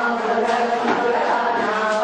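Devotional chanting by several voices together, the recitation running on at a fairly steady pitch.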